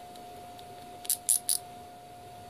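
Three short scratchy clicks in quick succession about a second in, from the digital micrometer being handled and its thimble turned, over a steady faint tone.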